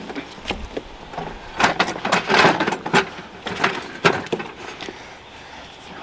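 A portable camping fridge's plastic case being turned round on a slatted table: irregular scrapes, knocks and clicks, the loudest scraping about two seconds in.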